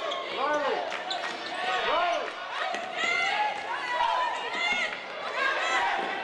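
Live basketball game sound on an indoor hardwood court: sneakers squeaking in many short rising-and-falling chirps, a basketball bouncing now and then, and voices in the arena.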